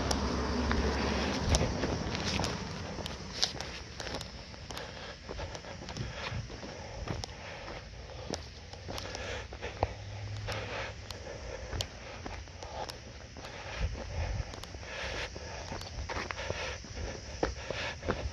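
Footsteps of a person walking on concrete sidewalk and driveway, an irregular run of light steps, with a low rumble in the first second or two.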